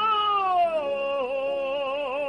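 A cantor singing a sustained note with wide vibrato, gliding down in pitch about half a second in and then holding the lower note, with a quiet held accompaniment chord beneath.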